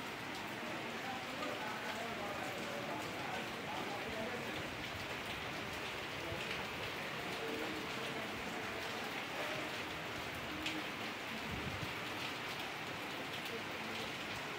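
Steady rain falling, an even, unbroken patter of drops that neither builds nor fades.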